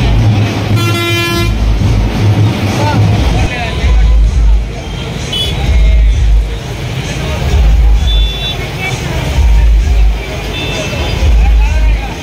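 A vehicle horn toots once, briefly, about a second in, as a single steady note. Loud, deep bass from a sound system swells and fades every second or two, with people's voices around it.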